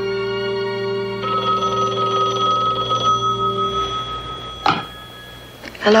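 A telephone bell ringing over held music chords, with the ring starting about a second in and lasting about two seconds. The music fades, and near the end there is a short click as the handset is picked up.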